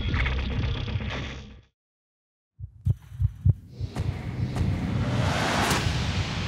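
Promo music cutting off, a second of silence, then the intro's sound design: four heavy thumps in quick succession followed by a swelling whoosh that builds toward the end.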